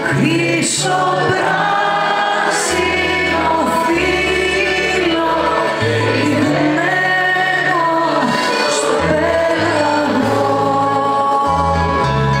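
A woman singing a Greek song live through a concert PA, holding long notes, with a small band accompanying her over a bass line that steps from note to note.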